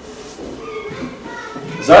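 A pause in a man's speech, with a child's high voice heard quieter in the background; near the end the man starts speaking again.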